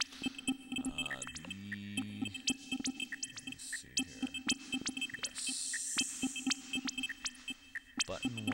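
Glitchy electronic drum pattern from a Reason 4 glitch box of Redrum and Thor synths: dense sharp clicks over a steady low tone, with a pitched synth note a little under two seconds in and a hissy noise burst just past five seconds.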